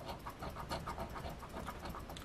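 A coin scratching the coating off a scratch-off lottery ticket: soft, quick, even back-and-forth scraping strokes.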